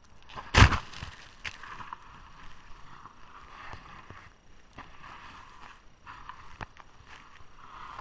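Yes. 20/20 snowboard sliding and carving through snow, a steady hiss from the base and edges, heard from an action camera worn by the rider. A loud knock about half a second in, and a few smaller clicks later.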